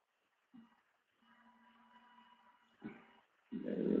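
Mostly near silence on a webcam microphone, with a faint steady hum and two soft clicks. In the last half-second comes a low, rising vocal sound from a man about to speak.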